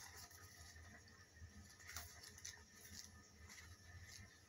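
Near silence with a few faint rustles and soft ticks of paper being handled, as the pages of an oracle card guidebook are leafed through.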